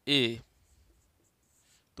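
A man's voice says one short syllable. Then a marker scratches faintly across a whiteboard as he writes, a little louder near the end.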